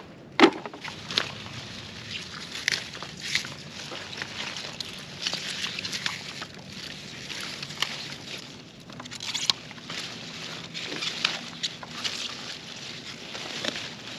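Pea vines rustling and crackling as pods are picked by hand, in irregular short snaps and rustles, with a faint steady low hum underneath.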